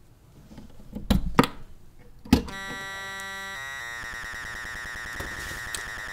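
Synthesized electronic sound from the Tabør eurorack module: three sharp struck hits, then a sustained buzzy tone with many overtones. The tone shifts its timbre partway through and then holds steady.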